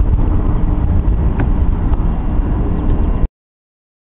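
Wind buffeting the camcorder microphone, a loud low rumble, which cuts off abruptly about three seconds in to dead silence.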